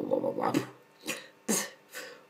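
Vocal beatboxing by a single performer: a short voiced, buzzy sound in the first half-second, then a sharp hissing percussive hit about a second and a half in.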